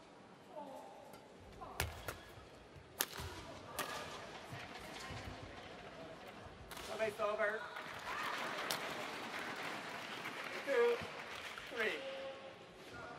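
Sharp knocks of racket and shuttle and a player hitting the court floor as a badminton rally ends. Then an arena crowd cheers and shouts, swelling about seven seconds in.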